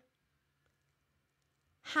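Near silence in a pause between spoken phrases, with one faint tick about two thirds of a second in; a woman starts speaking again near the end.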